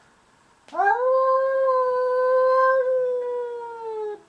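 Domestic cat giving one long, loud territorial yowl at a rival cat. It starts about a second in, holds a steady pitch for about three seconds and sags slightly in pitch as it ends.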